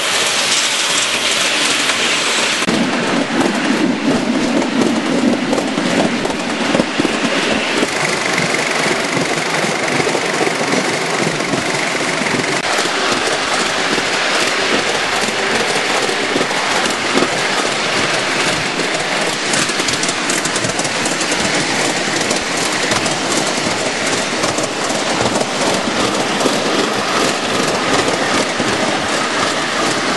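Miniature steam railway train running, heard from aboard: steady running noise with a continuous fine clatter of small wheels on the track.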